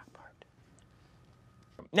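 Faint whispered speech trailing off, then a quiet stretch of room tone, with a voice starting loudly right at the end.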